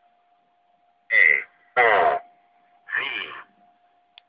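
A voice coming through a ham radio's speaker in three short bursts, over a faint steady tone.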